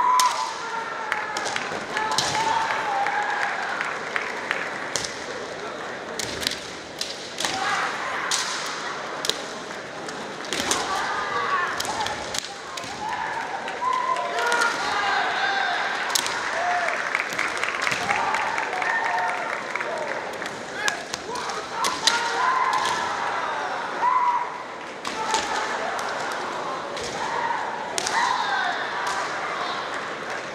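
Kendo bout: the fencers' wavering, drawn-out kiai shouts, broken by many sharp clacks of bamboo shinai striking and stamps of bare feet on the wooden floor at irregular moments.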